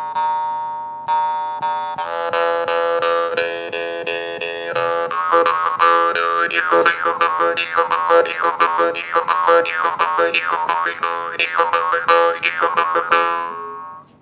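Morsing (South Indian jaw harp) played solo. It opens with a few single twangs about a second apart, then breaks into a fast, rhythmic run of plucks over a steady drone, with its overtones sweeping up and down as the mouth shapes the sound.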